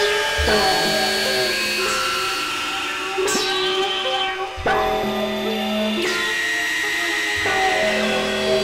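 Experimental electronic synthesizer music: layered, sustained drone chords that shift every second or two, some entries opening with a sweep falling from high to low.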